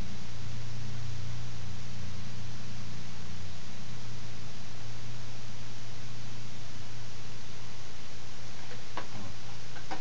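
Steady low hum with hiss, the background noise of a desk recording setup, with a couple of faint mouse clicks near the end.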